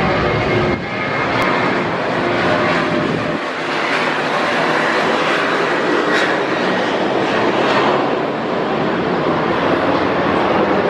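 Boeing 737-700 BBJ's jet engines running at high thrust during the takeoff roll, a steady loud jet noise.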